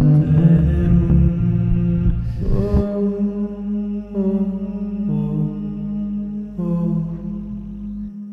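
Sound-art drone music: sustained, layered tones over a steady low hum. A heavy low rumble cuts out about three seconds in, and the upper tones then change pitch several times as the level slowly falls.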